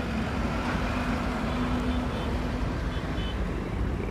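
Steady low rumble of outdoor road traffic, with a faint steady hum through the first couple of seconds.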